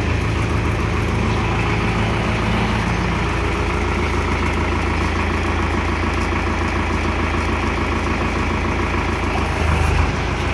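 Tractor engine running steadily at idle, powering the hydraulics of a post-driving hammer rig, with no hammer blows. The low hum swells briefly near the end.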